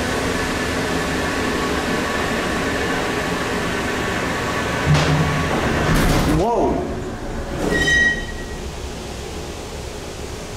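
1967 Westinghouse traction freight elevator travelling down the hoistway, its drive running with a steady hum and whine. About six to seven seconds in the car stops hard while levelling, with a jolt, and the running sound drops away; a short high tone follows.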